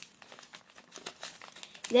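Faint crinkling and rustling of a paper sheet being folded and pressed by hand into an origami fortune teller, in small irregular scrapes.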